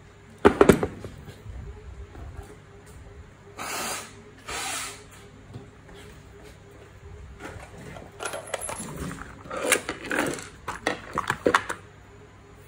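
Metal parts of a small aluminium gearbox and tools clinking and knocking on a workbench as they are handled and set down. There is a sharp metallic knock about half a second in, two short scraping rustles around four seconds, and a quick run of light clicks near the end.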